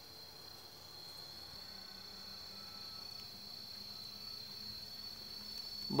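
Insects droning, one steady high-pitched tone that does not break.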